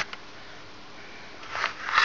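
A person sniffing twice near the end, close to the microphone, over a quiet room background, with a brief click at the start.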